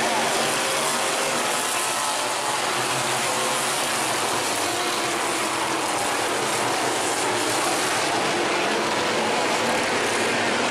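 A pack of Thunder Stock race cars running hard together on a dirt oval, their many engines blending into one steady, dense wash of engine noise.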